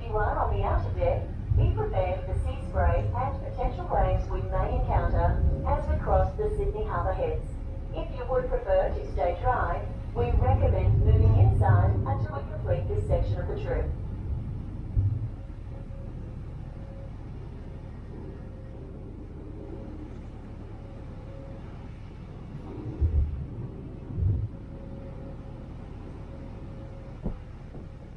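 Voices talking for about the first half, over the low rumble of a ferry under way; after that, the steady low drone of the ferry's engine and wash, with a faint steady hum and two low bumps about two-thirds of the way through.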